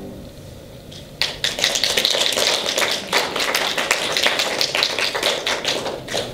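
A digital piano's last notes die away, and about a second later a small audience breaks into applause: dense, irregular clapping that goes on until near the end.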